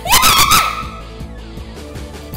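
Karaoke backing track of a pop song playing. At the very start a young woman gives a short, loud, high-pitched shout that slides up in pitch and holds for about half a second.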